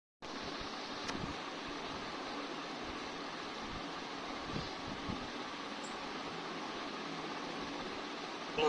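Steady background hiss of room or line noise, with a faint click about a second in and a few soft low thumps.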